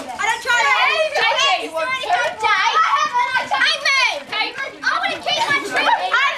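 A group of children all talking and calling out over one another in excited chatter, with high voices sweeping up and down in pitch.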